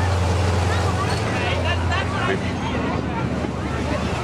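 Monster truck's engine running with a steady low drone that fades a little past halfway through.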